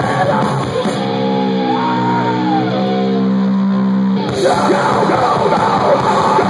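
Live metal band playing with distorted electric guitars, drums and shouted singing. About a second in the drums drop out and a held chord rings with a pitch gliding over it, and the whole band crashes back in about four seconds in.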